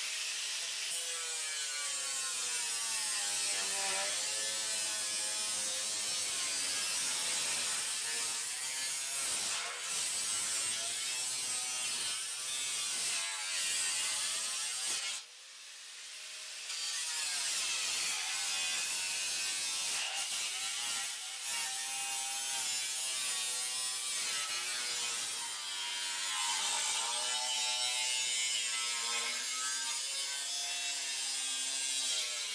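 Electric angle grinder with a cut-off wheel cutting through a sheet-steel truck fender, its motor pitch wavering up and down as it loads under the cut. It stops briefly about halfway through and then starts cutting again.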